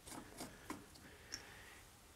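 A few faint clicks and a light plastic rubbing as the cap of a Land Rover Discovery 1's power steering fluid reservoir is twisted off to check the fluid level.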